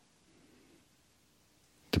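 Near silence: faint room tone, with one faint click right at the start.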